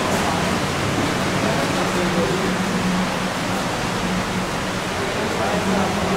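Crowd chatter: many overlapping voices blending into a steady noise, with no single speaker standing out.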